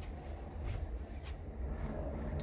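Low steady rumble of a car heard from inside the cabin, with two faint clicks.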